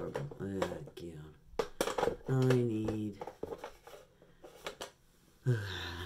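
Mostly a person's voice, muttering at first and then holding one long, steady vocal sound about two seconds in, with a few small sharp clicks just before it.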